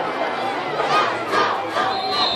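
Football crowd and sideline shouting and cheering during a play, many voices overlapping.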